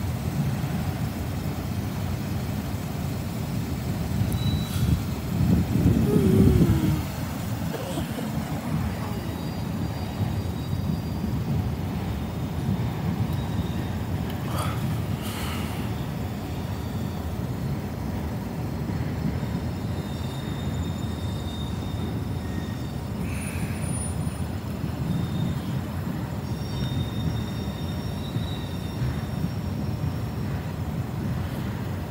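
A freight train of autorack cars rolling past at speed, a steady low rumble of wheels on rails, with a louder swell about five seconds in. Faint high squeals come in now and then in the second half.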